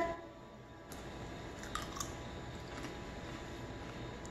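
A person chewing crisp dehydrated tomato slices, with a few short crunches about one to two seconds in.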